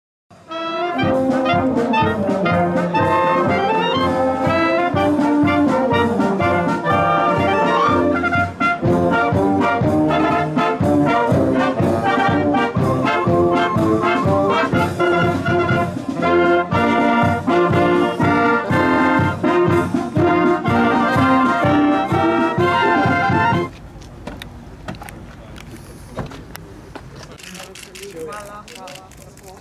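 Wind band of clarinets, flutes, saxophones and brass playing a tune together. The music cuts off abruptly near the end, leaving only faint background noise.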